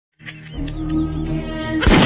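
Short logo intro music: held chord tones over a low pulsing drone, ending in a loud, noisy burst near the end.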